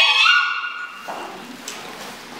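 A group of women's voices ends a chant with one high, piercing held call lasting under a second. It stops about a second in, leaving the hall's low murmur and a faint tap.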